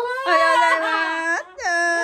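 Infant of about nine months crying: two long, steady-pitched cries, the second starting about a second and a half in.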